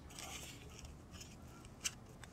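Faint rustling of a paper strip being handled around a PVC tube, with one sharp click near the end.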